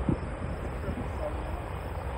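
Distant twin-engine jet airliner on its takeoff roll, which the spotter takes for a Boeing 767: a steady low rumble of engine noise.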